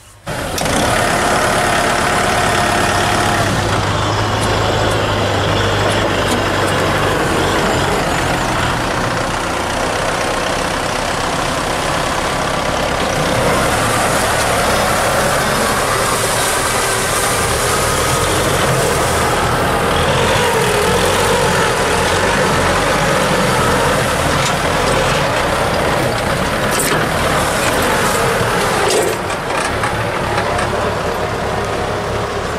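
Kubota 6040 tractor's diesel engine running steadily under load as it pulls a seven-disc plough through dry soil, mixed with the churning of the discs and soil; the engine runs light, without strain.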